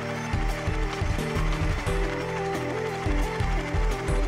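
Background music: a stepping melody over a regular low beat.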